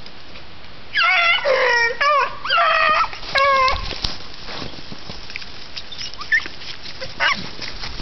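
Hounds baying on a hare's trail: a quick run of about six loud, high, bending bawls from about a second in to nearly four seconds, then one more short cry near the end.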